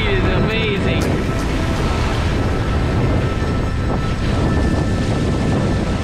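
Steady wind noise on the microphone over water rushing and spraying along the hull of a Hobie Cat catamaran under sail at speed.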